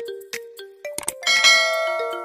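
Background music with a simple note-by-note melody. About a second and a quarter in, a bright bell chime rings out and slowly fades, the notification-bell ding of a subscribe-button animation.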